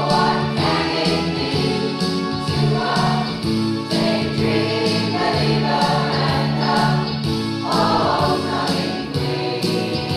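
Community rock choir of adults and children singing together over a steady beat.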